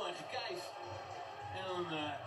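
Faint, indistinct speech with music under it, like a broadcast playing in the background.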